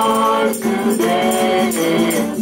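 Gospel worship singing, with long held notes, accompanied by a hand tambourine whose jingles are shaken in a steady rhythm.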